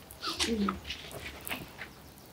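A short wordless vocal sound, one drawn-out call that falls in pitch, followed by faint rustles and light taps.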